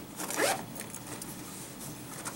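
A zipper pulled once, briefly, with a quick rising zip about half a second in.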